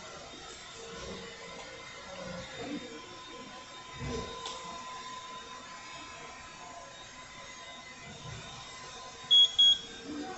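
LED/UV nail-curing lamp giving two short high beeps near the end as its timer runs out and the light switches off, over a steady faint hum.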